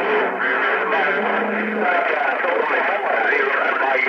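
Voices coming through a Stryker SR-955HP CB radio's speaker, thin and garbled enough that no words come through, with a steady low tone running under them briefly near the start and again around a second and a half in.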